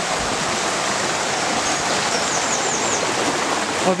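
Shallow river water rushing steadily over stones, an even, unbroken rush of water.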